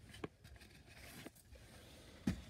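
Near silence, with faint handling noise: two soft clicks, about a quarter second and a second and a quarter in, among light scraping.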